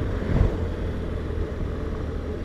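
BMW R1200RT motorcycle's flat-twin engine at a steady cruise, heard from the bike with road and wind noise, as an even drone.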